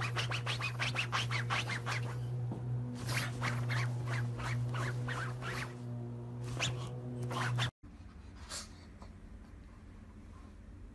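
A pug's front paws scratching rapidly at a fabric seat cushion in quick strokes, several a second, in three bursts with a pause a couple of seconds in, over a steady low hum. It cuts off abruptly near the end.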